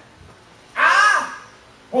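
A man's voice holding out one high, emphatic word in a single call that rises and falls in pitch, between short pauses in preaching. A spoken word follows right at the end.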